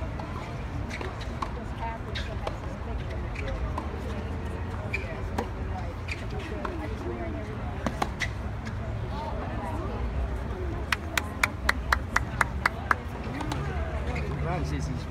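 Tennis balls struck by racquets in a practice rally: a few sharp, separate pops spread through, over the murmur of spectators' chatter and a low outdoor rumble. Toward the end comes a quick run of about ten sharp clicks, around five a second.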